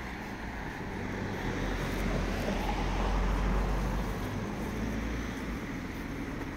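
A car passing by on the street, its engine and tyre noise swelling to a peak mid-way and then fading.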